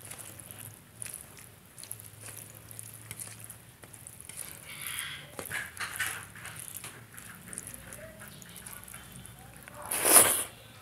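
Fingers mixing rice into a watery ridge gourd curry on a steel plate make soft wet squishing with many small clicks, louder around the middle. A loud mouthful is taken right at the end.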